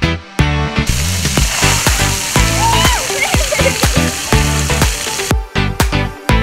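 Upbeat electronic dance music with a steady beat. From about a second in, a hissing wash of noise lies over it, cutting off about five seconds in.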